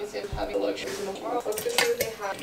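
Kitchen handling clatter during food prep, with a sharp clink near the end as an opened tin can is tipped against the immersion blender's beaker to pour its contents in.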